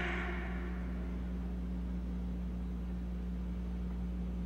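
A pause in the sermon: steady low hum and faint hiss of the recording, with the last words' echo dying away in the first moment.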